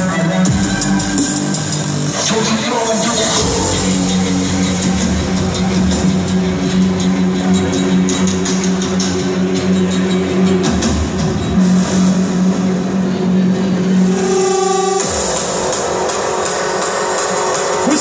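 Industrial hardcore electronic music played loud over a club sound system, with long held low synth notes. The sound changes about fifteen seconds in.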